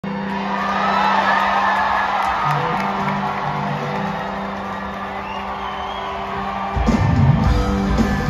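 Rock band playing live through a big PA, with held keyboard or guitar tones under a cheering, whooping crowd. Drums and bass come in hard near the end as the song's intro gets going.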